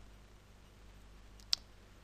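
A single sharp computer mouse click about one and a half seconds in, over a faint steady hum.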